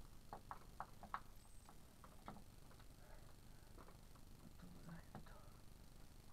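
Near silence: room tone with a few faint, short clicks in the first second or so.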